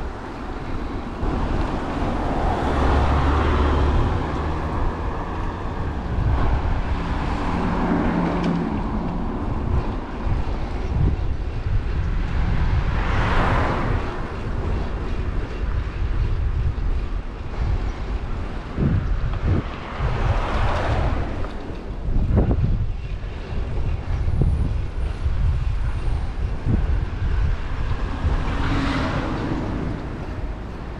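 Steady wind rumble on the microphone of a bicycle-mounted action camera, with cars passing on the road: one about halfway through, one about two-thirds through and one near the end.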